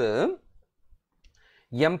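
A man speaking Tamil breaks off for about a second, and a few faint computer mouse clicks are heard in the pause before he speaks again.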